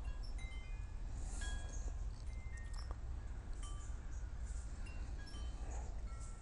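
Wind chimes tinkling: short, high ringing tones at different pitches, sounding at irregular intervals over a low steady hum.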